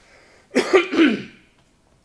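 A man clearing his throat in two quick rasps, starting about half a second in.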